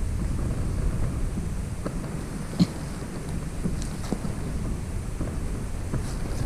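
Steady low rumble of wind on the microphone, with a few faint clicks and one sharper tap about two and a half seconds in.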